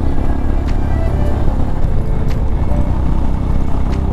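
Royal Enfield Himalayan's single-cylinder engine running steadily at cruising speed, a continuous low rumble.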